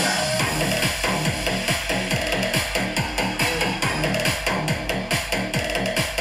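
Electronic dance music from a DJ set played loud, with a steady, fast kick-drum beat.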